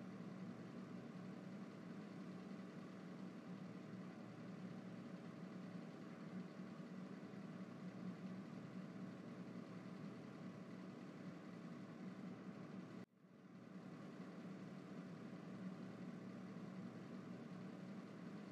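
Faint steady low hum, like an idling engine heard from inside, with a brief drop-out about thirteen seconds in.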